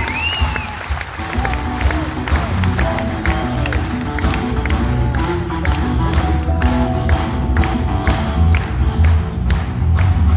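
Live rock band playing through a PA in a hall: a steady drum beat with bass guitar, electric guitar and keyboards.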